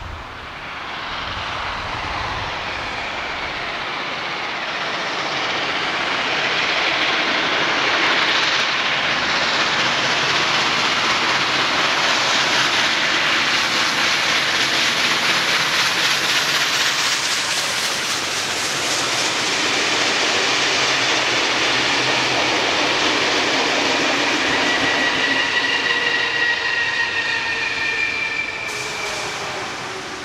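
Beyer-Garratt AD60 articulated steam locomotive No. 6029 hauling a passenger train past. The sound builds over the first several seconds, stays loud and steady as the engine and carriages go by, and dies away at the end. A few steady high tones sound briefly near the end.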